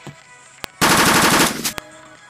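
Gunfire sound effect: a single sharp click, then a rapid burst of shots lasting under a second, then two more sharp clicks.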